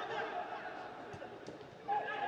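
Voices of players calling out on the pitch, heard across a large indoor sports hall, fading near the end, with two faint knocks a little over a second in.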